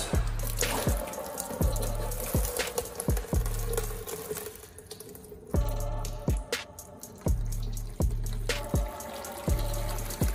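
Water pouring from a drain hose into a plastic tub of water as a water heater tank drains: the flow of water and sediment after a clog at the drain valve has been broken with a shot of air. Background music with a steady beat plays over it.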